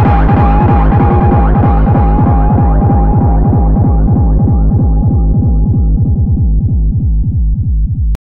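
Loud electronic music from a live DJ set: a rapid, heavy kick drum, about six beats a second, under a steady tone. The treble is swept away gradually so the track grows duller and duller.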